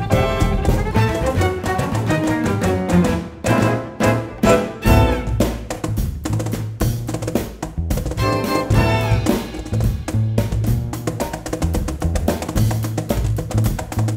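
Chamber-jazz ensemble playing: bowed violin and viola over a held low string line, with drums and percussion striking sharp hits throughout.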